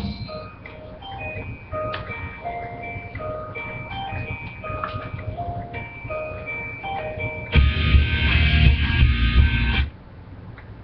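A simple electronic melody of single, clean notes stepping up and down, like a music-box or ice-cream-van tune. About seven and a half seconds in, a much louder, fuller stretch with heavy bass takes over, then cuts off suddenly near the end.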